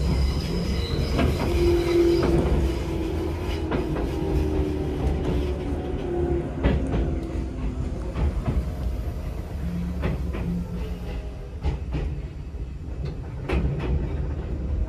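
Interior of a Tobu SkyTree Train car (6050-series-based) running along the line: a steady low rumble with clicks of the wheels over rail joints. A thin squealing tone from the wheels comes in over the first few seconds and then fades.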